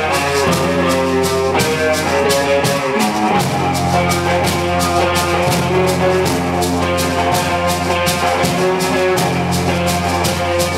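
A rock band playing live: an instrumental passage of guitars and bass held over a steady drum-kit beat with even cymbal hits.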